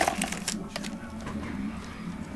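Trading cards and their torn foil pack wrapper being handled: a few sharp crackles in the first half second, then soft handling sounds as the cards are sorted.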